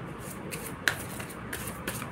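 A deck of tarot cards being shuffled by hand: light papery rustling, with a sharp click about a second in and another near the end.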